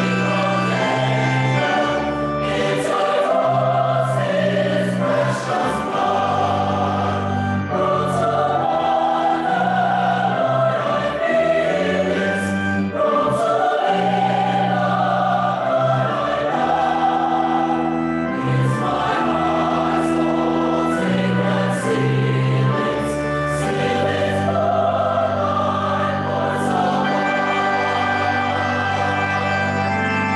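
A large mixed choir of men's and women's voices singing in harmony, holding long chords that change every second or two.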